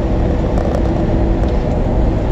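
Steady engine and road noise inside the cab of a moving truck, low and even, with a faint steady hum running through it.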